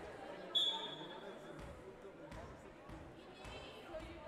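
A referee's whistle blown once, a steady high tone about a second long that signals the serve, followed by a volleyball bounced a few times on the wooden gym floor.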